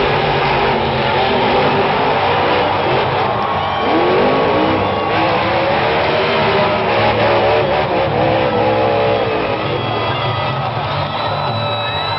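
Monster truck engine revving, its pitch sweeping up about four seconds in and then holding high, mixed with music.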